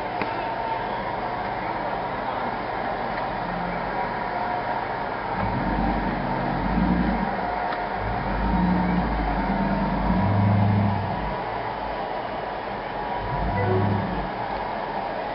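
Dodge Ram 1500 plow truck's engine revving in several surges under the load of pushing deep snow, the loudest about ten seconds in. It lacks the power to push through.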